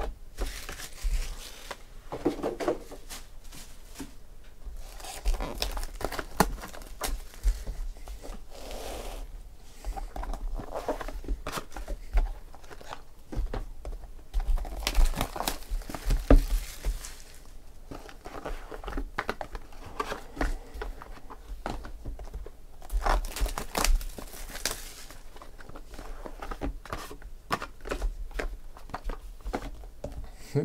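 Plastic shrink-wrap crinkling and tearing as sealed trading-card boxes are unwrapped and handled, in irregular bursts with short knocks between them.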